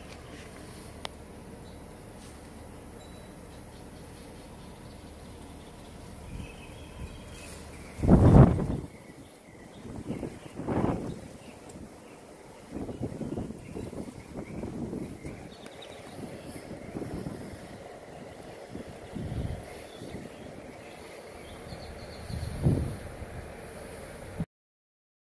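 Wind buffeting the microphone in irregular rumbling gusts over a steady low outdoor hum. The strongest gust comes about eight seconds in, with weaker ones after it.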